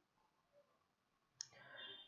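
Near silence with a single short click about a second and a half in, followed by faint low noise.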